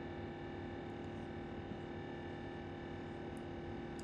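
Quiet room tone with a steady electrical hum made of several constant tones, unchanging throughout.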